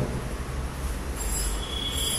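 Steady low background hum and hiss, joined about a second in by a high-pitched steady whine made of several thin tones.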